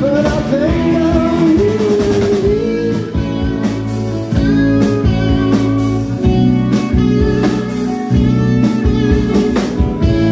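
A live blues-rock band playing: electric guitar, bass guitar and drum kit together, with a bending lead melody over the first couple of seconds giving way to held notes and a steady beat.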